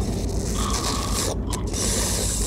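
A man noisily sucking liquid through a thin glass drinking tube: a rasping, hissing slurp that breaks off briefly about one and a half seconds in and then starts again. A steady low drone runs underneath.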